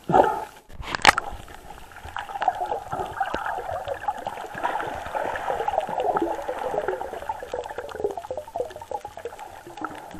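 Water heard through a camera microphone underwater: a dense, steady bubbling crackle, with a sudden loud burst at the start and a sharp click about a second in.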